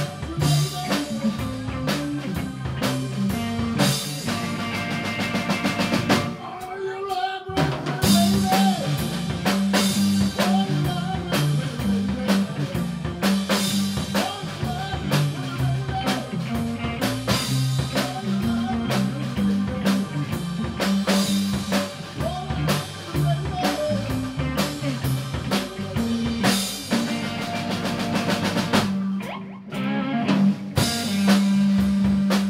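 Live band playing with a drum kit, two electric guitars and a keyboard. The band stops briefly about six seconds in, then comes back in, and drops away again for a moment near the end.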